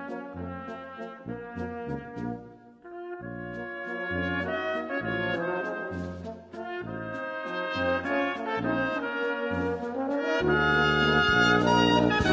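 Brass band music: trumpets and trombones over a bass line in short, regular notes, with a brief break about three seconds in before it swells again near the end.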